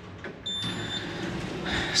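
A single high-pitched electronic beep, about half a second long, starting about half a second in, over a low background of noise.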